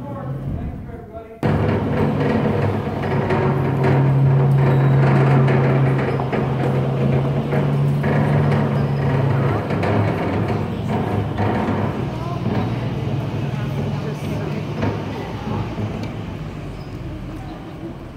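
Engine of a jeep-drawn cave tour tram running as it carries riders along: a loud, steady low drone that cuts in suddenly about a second and a half in and eases off a little near the end.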